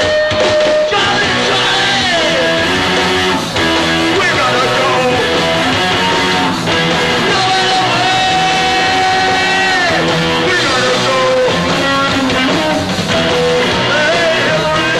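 Hardcore punk band playing live: loud distorted electric guitar with bending notes, over bass and drums, with shouted vocals.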